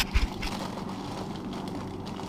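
A few sharp knocks and crinkles of plastic freezer bags being handled in a freezer door bin, right at the start, followed by steady background noise.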